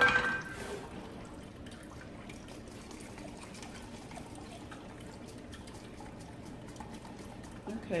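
Melon seed milk trickling and dripping through a fine mesh strainer into a bowl, with a steady patter of small drips. It begins with a ringing clink.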